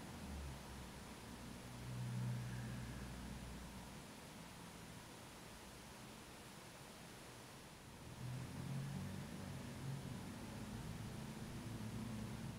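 Quiet room tone with a faint hiss and soft low rumbles, once about two seconds in and again from about eight seconds; the mascara wand itself makes no clear sound.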